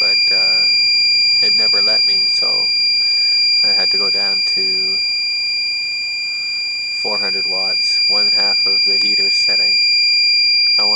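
Iliminator 1750 W inverter's low-voltage alarm sounding as one steady, unbroken high-pitched tone. It is the warning that the 12-volt battery bank has run down under load to about 10.6 volts, close to the inverter's low-voltage cutout.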